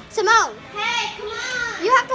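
Children's high-pitched voices talking and exclaiming close to the microphone.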